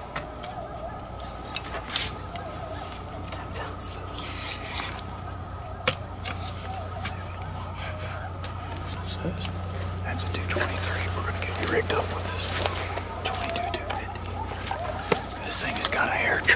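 A pack of coyotes yipping and howling in wavering, gliding calls, which swell into a busier chorus about two-thirds of the way through, over a steady low hum.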